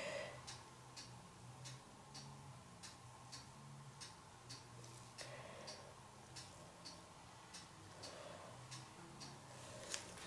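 Faint, steady ticking, about three ticks a second, over a low hum, with a few soft sounds of paint being squeezed from a plastic squeeze bottle.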